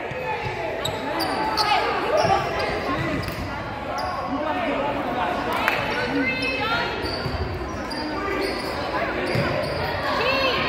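Indoor basketball game on a hardwood court: a ball bouncing, sneakers squeaking in short chirps, and players' and spectators' voices echoing in the gym.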